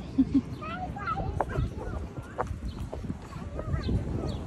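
Two soft hand claps from a toddler about a second's fraction in, then high, wavering young children's voices at a playground, over a steady low rumble of wind on the microphone.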